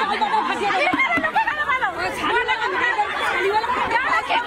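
Crowd chatter: many women's voices talking over one another, with no single voice clear.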